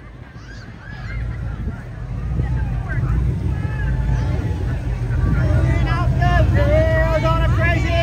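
Lifted Jeep's engine running as it drives slowly past close by, a low rumble that builds from about a second in and grows louder toward the end, with crowd voices over it.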